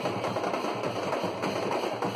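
A street band's large strapped drums beaten with sticks in dense, continuous drumming, with crowd noise mixed in.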